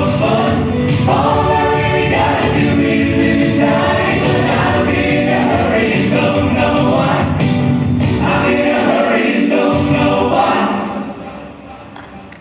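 A mixed show choir of men and women singing a country song in harmony into microphones, with accompaniment. The music fades down about ten and a half seconds in.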